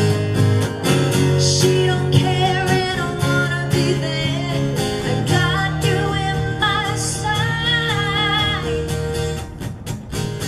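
Live acoustic song: a steel-string acoustic guitar strummed in a steady rhythm over held keyboard chords, with a woman singing lead in a wavering voice.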